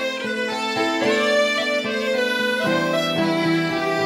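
Instrumental music: a slow melody of long held notes over a steady accompaniment, with lower notes coming in about two-thirds of the way through.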